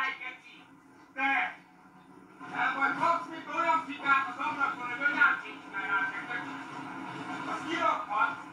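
Voices from a played-back recording of a quarrel between a tram driver and a passenger, heard through a device's speaker. There is a brief utterance about a second in, then continuous talking from about two and a half seconds on, over a steady low hum.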